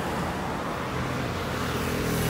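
Steady, low mechanical background rumble with no distinct events.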